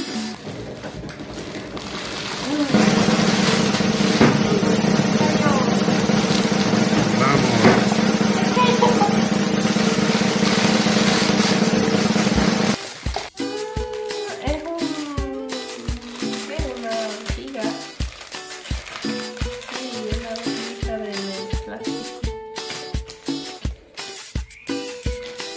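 A drum-roll sound effect starts about three seconds in and runs for about ten seconds under held tones, then cuts to background music with a steady beat of about two beats a second.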